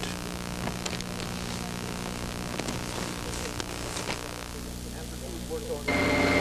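Steady low electrical hum with faint hiss and a few faint clicks: the dead air of an old broadcast tape between segments.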